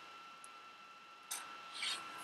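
Pebble counters being set down and slid by hand on a paper counting board: two short rubbing scrapes, one about a second and a quarter in and one near the end.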